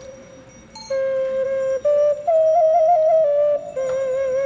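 A small shepherd's whistle, played by mouth with the fingers on its holes, sounds a folk tune in clear, flute-like held notes. After a short quieter pause at the start, the notes step up into a higher passage with quick trills, then settle back onto a lower note with vibrato.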